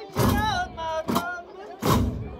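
Ahwash performance: a men's group chanting in gliding, drawn-out lines, punctuated by loud hand strikes on large frame drums. Three strikes fall in two seconds: one just after the start, one past the middle and one near the end.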